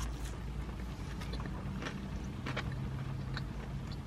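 Someone chewing a mouthful of loaded steak fries, with a few faint, irregular mouth clicks over a steady low hum in the car.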